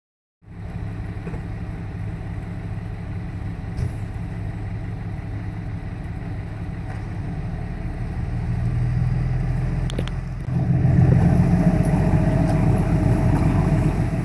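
A motor vehicle engine's steady low drone, getting louder for the last few seconds.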